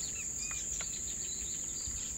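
Insects chirring in one continuous high-pitched note, with a faint short chirp about half a second in.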